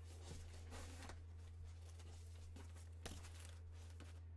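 Faint rustling and handling noise as a goalie catching glove's cord tie is pulled loose and the glove is lifted out of its box, with a short click about three seconds in. A steady low hum runs underneath.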